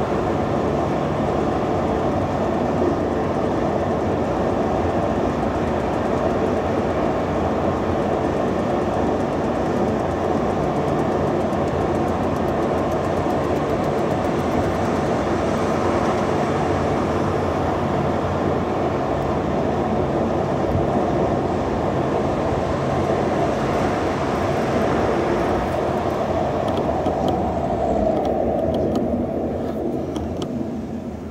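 Steady rumble of road and tyre noise heard inside a moving car's cabin at speed, easing off near the end as the car slows for traffic lights.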